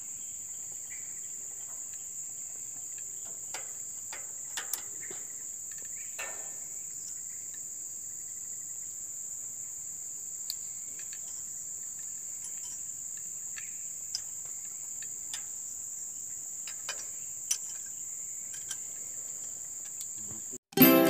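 A steady, high-pitched insect chorus drones without a break, with a few short, faint clicks and knocks scattered through it; the sharpest comes near the end.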